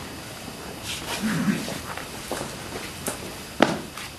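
Performers moving about a small stage: scattered footsteps and shuffles, a short low vocal sound about a second in, and a sharp knock shortly before the end.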